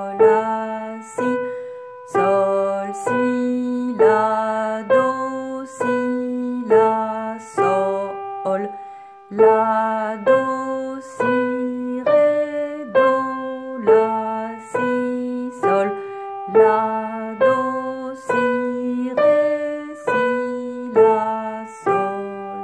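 Upright piano: a slow, simple beginner's melody in G played by the right hand alone, single notes struck at a steady beat a little more than one a second, each ringing and fading before the next.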